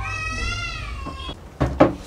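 A cat meows once, a long call that rises and then falls in pitch, followed near the end by two sharp knocks close together, which are the loudest sounds.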